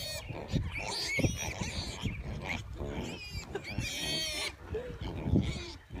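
A group of piglets grunting and squealing, with short high-pitched squeals about a second in, around three seconds and again around four seconds.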